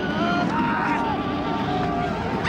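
Horror-film soundtrack of a creature attack: high, wailing cries that glide up and down over a steady low droning rumble.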